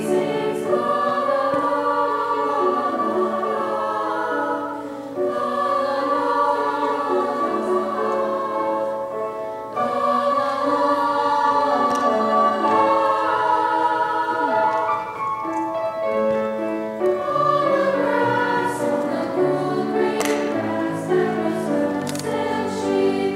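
High school vocal ensemble singing in harmony, held chords in long phrases with short breaths between them about 5 and 10 seconds in.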